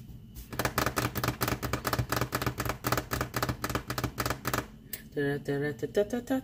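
A person's voice making a rapid, rhythmic, wordless sound at one steady pitch for about four seconds, followed by a short pause and more wordless vocalizing near the end.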